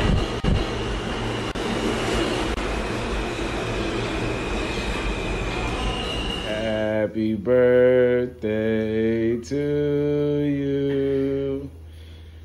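Subway train running past a station platform, a steady rumble of wheels on rails with a faint high squeal. About seven seconds in it gives way to a voice singing slowly in long held notes.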